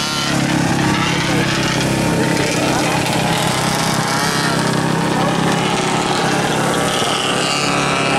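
Several small racing-kart engines running steadily together as the karts circle at reduced speed under a caution, with spectators' voices over them.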